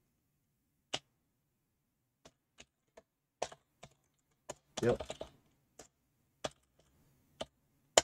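Computer keyboard keys struck one at a time: about ten separate keystrokes at slow, uneven intervals.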